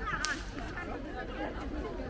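Voices of passersby talking in a busy pedestrian square, with one sharp snap just after the start.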